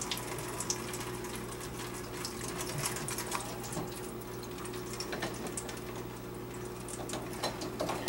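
Water trickling out of a loosened plastic P-trap slip nut into a stainless steel bowl, a steady trickle with many small ticks and drips.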